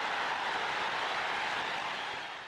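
Whoosh sound effect of a logo intro: a steady rushing hiss with no tone in it.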